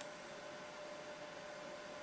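Faint, steady hiss with a thin constant hum: room tone.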